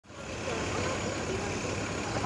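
City street ambience: a steady rumble of traffic, fading in over the first half second.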